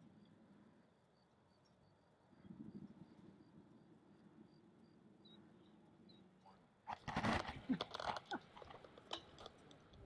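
A faint low hum, then from about seven seconds in a loud, irregular burst of rustling, crackling and knocks close to the microphone, typical of a handheld camera being handled and moved.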